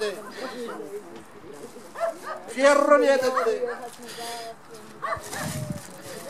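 A dog barking now and then, with people's voices in the background.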